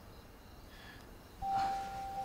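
Quiet room tone, then about a second and a half in, a soft background music score begins with one held high note.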